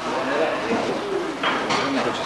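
Indistinct voices of several people talking quietly in a room.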